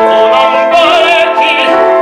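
Operatic tenor singing sustained notes with a wide vibrato, accompanied by a grand piano.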